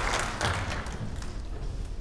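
Audience applause dying away to a few scattered claps within about the first second and a half, with some low thuds underneath.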